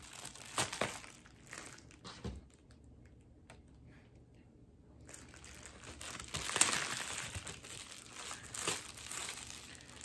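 Packing material crinkling and rustling in irregular bursts as a padded mail package is unwrapped, with a quieter stretch of a couple of seconds in the middle.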